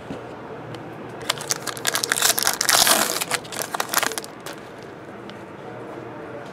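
Foil wrapper of a trading-card pack crinkling and tearing as it is opened by hand, a dense run of crackles lasting about three seconds from a second in, with quieter card handling around it.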